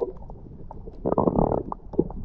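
Muffled underwater sound from a camera held below the surface: water gurgling, with scattered faint clicks and a louder burst of bubbling about a second in that lasts about half a second.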